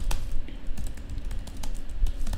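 Typing on a computer keyboard: an irregular run of key clicks, several a second, over a low steady rumble.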